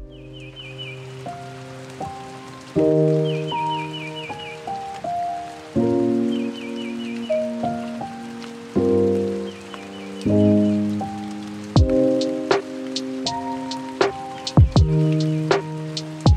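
Lo-fi hip hop track starting up: mellow keyboard chords over a rain sound effect, with a short high chirping figure that comes back every two to three seconds. A drum beat with a kick drum comes in about twelve seconds in.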